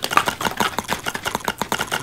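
Rapid, irregular wet clicking from a plaque-disclosing agent being chewed and swished around the mouth.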